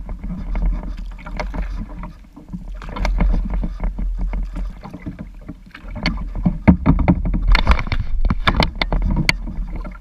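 Kayak paddling on a calm river: the paddle blade splashing and dripping and water slapping against the plastic hull of a Sun Dolphin Aruba 10 kayak, picked up close by a camera on the bow, over a steady low rumble. The splashes come thicker and sharper in the second half.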